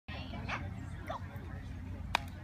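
A dog giving two short, high yips, about half a second apart.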